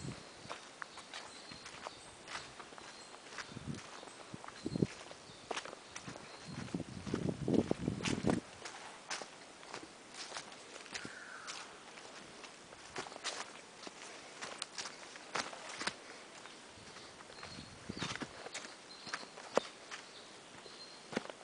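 Footsteps crunching along a forest trail of leaf litter, with a louder stretch of rustling about seven to eight seconds in. A bird gives short high notes about once a second near the start and again near the end.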